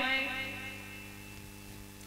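Steady electrical mains hum with a few sustained tones, fading gradually after the speech stops.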